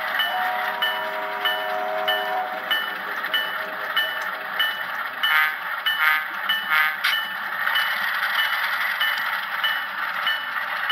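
HO-scale model train sound: a train whistle chord of several steady notes that cuts off about two and a half seconds in, over a steady hiss with a regular light click a little under twice a second. A few brief metallic ringing strokes come between about five and seven seconds in.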